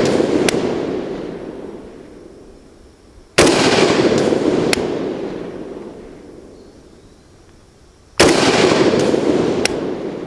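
AK-47 rifle fired twice in slow, aimed single shots about five seconds apart, each crack followed by a long rolling echo that fades over about three seconds; the echo of a previous shot is still fading at the start. A few faint sharp ticks follow shortly after each shot. These are shots of a five-shot group fired to check the iron-sight zero after a front sight post adjustment.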